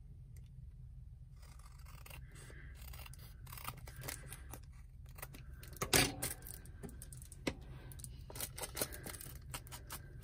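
Scissors trimming a sliver off the edge of a piece of cardstock: a scatter of small snips and clicks with the paper rustling as it is handled, and one sharper click about six seconds in.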